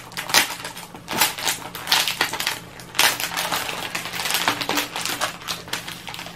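Clear plastic packaging crinkling and rustling in irregular bursts as it is handled.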